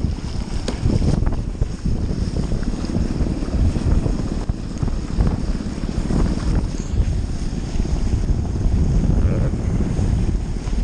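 Wind buffeting the microphone in gusts, with water rushing along the hulls of a Hobie 20 catamaran under sail.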